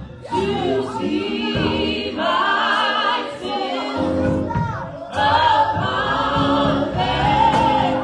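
A gospel vocal group of several voices singing together into microphones, in long phrases with wavering held notes and short breaths between them.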